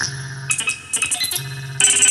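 Moog Matriarch semi-modular analog synthesizer played dry, with no external effects, making experimental electronic tones. A low held tone sounds twice, near the start and again after the middle, under shifting high bleeps, with a brief dip about a second in.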